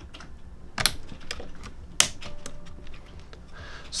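Sharp plastic clicks and light taps from the clips and plastic parts of a UE Megaboom portable speaker as its fabric cover is worked off the frame. The two loudest snaps come just under a second in and about two seconds in.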